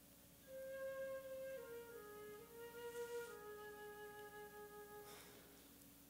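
The pit orchestra plays a short, soft melodic phrase of a few held notes stepping down in pitch. It starts about half a second in and stops about five seconds in.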